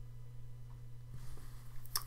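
Quiet room tone with a steady low hum, and a brief click near the end.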